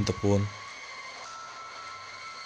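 A voice telling a story speaks one short phrase at the start, then pauses, leaving a faint steady hum with thin tones underneath.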